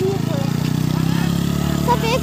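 A motorcycle passing close by on the road, its engine running with a steady, slightly rising note.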